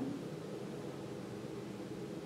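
Steady low hiss of room tone, with no distinct event.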